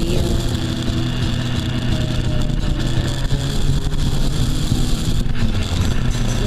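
Yamaha FJR1300's inline-four engine running at a steady cruise, with wind rushing over the onboard camera.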